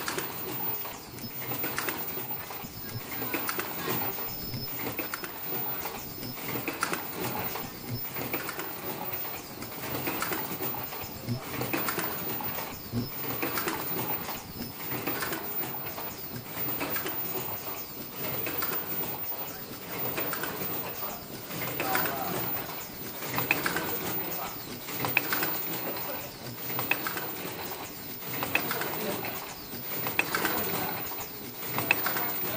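Automatic earloop face mask production line running, with the uneven repeated clatter and clicking of its stations cycling.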